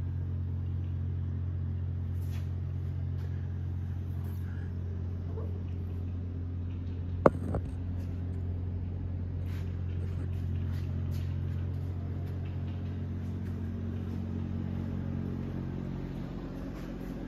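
Steady low droning hum with even, unchanging pitch, and a single sharp click about seven seconds in.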